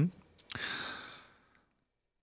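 A man's long breathy sigh, about half a second in, fading out within a second, followed by dead silence.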